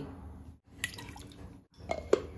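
Quiet handling of stainless-steel kitchenware as curd is tipped into a mixer-grinder jar and its lid is fitted: soft taps and a couple of sharp clinks over a faint low hum. The sound cuts out briefly twice.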